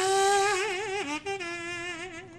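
A small handheld horn played as a sound effect: a held note, a short break about a second in, then a slightly lower note with a strong waver.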